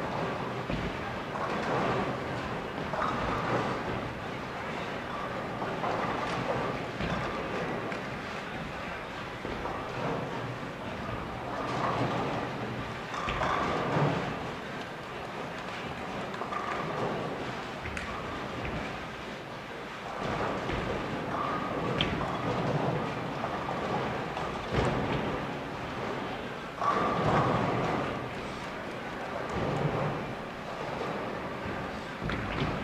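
Bowling alley ambience: a ball rolling down a lane and crashing into the pins, with scattered impacts from other lanes over background chatter.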